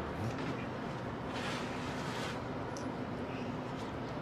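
Steady outdoor background noise with a faint low hum, and a brief soft hiss about a second and a half in.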